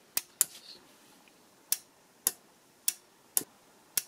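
Spring-loaded, water-pressure-operated snap switch from a tankless water heater, clicking sharply about seven times, unevenly spaced, as its plunger is pressed and released by hand.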